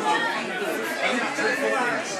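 Indistinct chatter: several people talking over one another, with no single voice clear.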